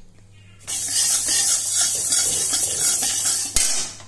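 Flat metal spatula stirring dry split moong dal in a metal wok: the lentils scrape and rattle against the pan as they dry-roast. It starts about two-thirds of a second in and stops near the end with one sharp knock.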